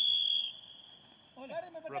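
Wrestling referee's whistle: one loud, steady, high-pitched blast that fades away over about a second, stopping the action on the mat.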